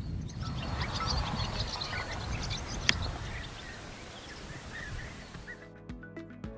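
Outdoor ambience of small birds chirping sporadically over a steady low rumble, with a single sharp click about three seconds in.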